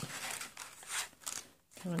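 Paper rustling and crinkling as the folded paper treat bag and its fringed cardstock top are handled and a hand stapler is shifted along it, swelling twice in the first second.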